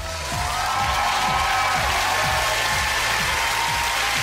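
Closing theme music with a steady beat, mixed with a studio audience cheering and applauding; the cheering swells just after the start.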